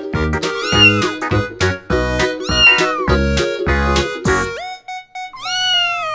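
Music with a steady beat, and a cat meowing over it three times: short rising-and-falling meows about a second in and near three seconds, then a longer falling meow near the end after the beat drops out.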